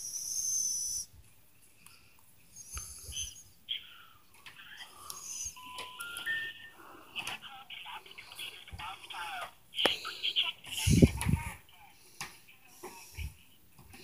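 Three short steady tones rising in steps from a phone on a call that is not going through, the three-note intercept signal that comes before a carrier's recorded message, with faint phone-line sound and a high whistle near the start. Low handling bumps about eleven seconds in are the loudest sound.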